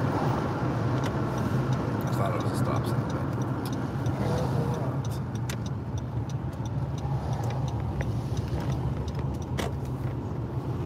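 Road noise inside a moving car's cabin: a steady low hum of engine and tyres on the pavement, with scattered faint clicks.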